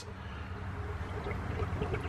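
Water running steadily into an aquaponics fish tank, a continuous trickling pour.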